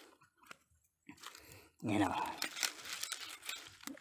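Dry palm-frond mulch crackling and rustling as a hand works in among it. The crackling starts about two seconds in after a near-silent start.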